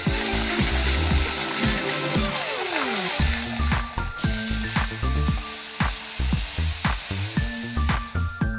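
Hot oil sizzling and spattering in a cooking pan as liquid hits oil tempered with chilli powder and spices. The sizzle is loudest in the first half, then fades under background music with a steady beat.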